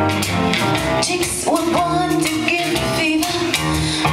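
Live acoustic band of piano, guitar and cajon playing a slow jazz-blues number, steady and full throughout.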